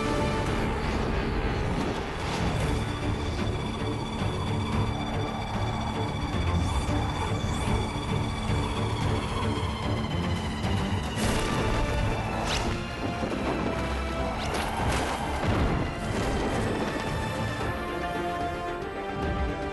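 Dramatic soundtrack music with held tones. A high note slowly slides down in pitch midway, and a few sudden crash-like hits land in the second half.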